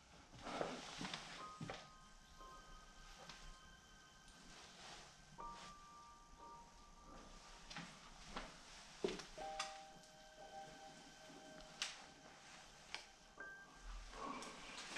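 Faint ambient background music of long held notes that move to a new pitch every few seconds. A few light knocks come through it as a wooden door is pushed open.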